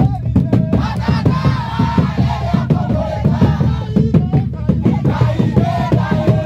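Akurinu church congregation singing and chanting together in a loud group worship song, with rhythmic hand clapping throughout.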